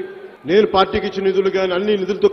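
A man giving a speech in Telugu into a microphone, with a brief pause just after the start.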